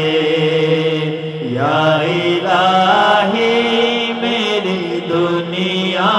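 A man's voice singing a naat unaccompanied in long, drawn-out melismatic phrases over a steady low drone, with a new phrase gliding up about a second and a half in.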